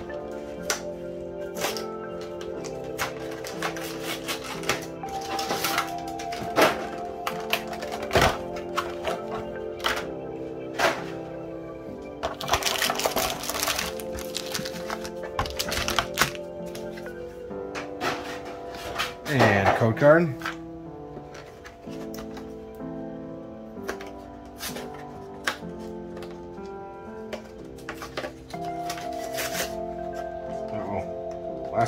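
Background music playing steadily over intermittent clicks, thunks and crinkling from handling cardboard boxes and plastic-wrapped Pokémon card booster packs, with a longer stretch of crinkling near the middle.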